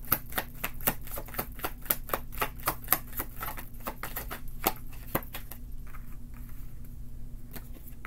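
A tarot deck being shuffled in the hands: quick papery clicks of cards slapping together, about five a second, thinning out about five seconds in.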